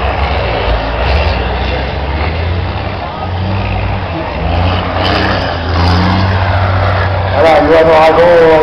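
Engines of distant race trucks running on a dirt circuit, the low drone swelling and fading as they drive and accelerate, over a steady wash of noise.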